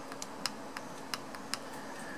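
A small tactile pushbutton on an Arduino CAN bus shield being pressed repeatedly, giving about six sharp little clicks at uneven spacing.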